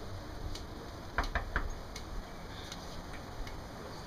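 Quiet background with a few faint, short clicks a little over a second in.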